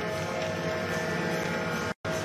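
A steady droning chord of several held tones in the hockey arena, cutting off abruptly just before the end.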